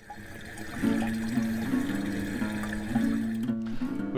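Background music: a slow line of low plucked notes that changes pitch step by step, over a steady hiss, starting suddenly as the picture cuts in.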